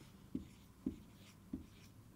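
Whiteboard marker writing letters on a whiteboard: faint, with three short strokes.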